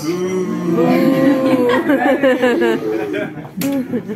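A voice talking through the stage PA, drawn out and sing-song in pitch, with a quick wavering laugh-like stretch about halfway through.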